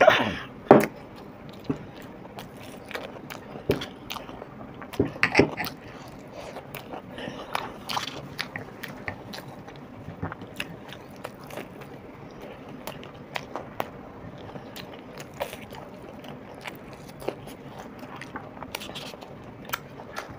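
Close-miked eating of batter-fried chilli fritters (mirchi bhajji): biting and chewing, with scattered short crunches and mouth sounds at irregular intervals.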